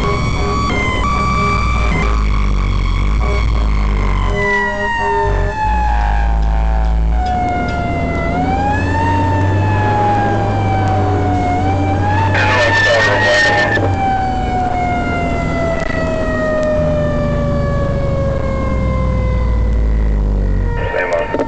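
Fire engine's siren wailing with its pitch slowly falling, pushed back up briefly about 8 seconds and 12 seconds in, over the steady low rumble of the truck. A louder blast of about two seconds comes about 12 seconds in.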